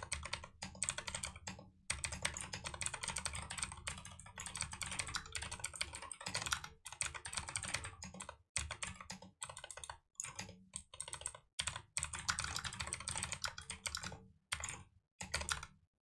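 Typing on a computer keyboard: fast runs of keystrokes broken by a few short pauses.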